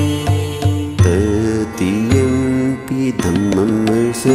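Chanted devotional singing over music: a melodic voice line that bends and wavers, set over a steady low drone with instrumental accompaniment.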